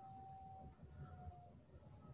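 Near silence: faint room tone over a video-call line, with a faint steady tone that stops about three quarters of the way through.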